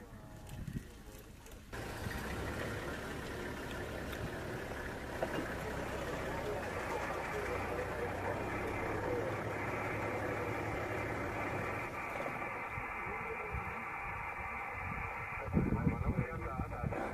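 Indistinct voices murmuring over a steady background hum, setting in suddenly about two seconds in, with no words clear enough to make out.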